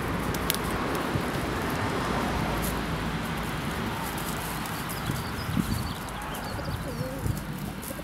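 Park ambience: a steady low rumble of distant traffic, small birds chirping through the second half, and a pigeon cooing briefly near the end.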